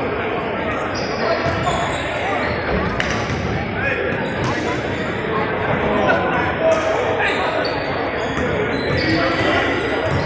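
Basketball gym ambience in a large echoing hall: indistinct voices of players and spectators, with a few sharp thuds of a basketball bouncing on the hardwood floor.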